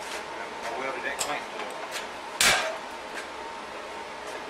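Metal tools and steel pieces being handled at a steel bench vise: light clinks and knocks, then one loud sharp clank about two and a half seconds in with a short metallic ring.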